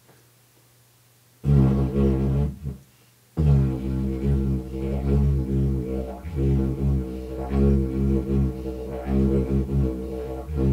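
Handmade didgeridoo played with a low, buzzing drone. A short drone starts about one and a half seconds in, there is a brief break, then a long steady drone with rhythmic pulses. The player reckons it lacks the resonance of a proper Australian didgeridoo.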